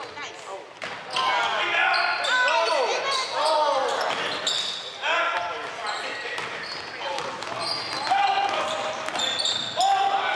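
Basketball game play on a hardwood gym floor: sneakers squeaking in short high chirps, a basketball being dribbled, and players' voices calling out, all echoing in a large gym.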